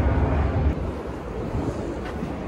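Wind buffeting a camera microphone outdoors: an even noisy rumble, heaviest in the low end, easing a little after the first second.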